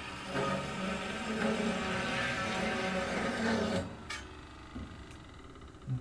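Metal-cutting chop saw running and cutting through a short piece of steel bar, a steady whine with a harsh grinding hiss, for about four seconds before it stops. A couple of light clicks follow.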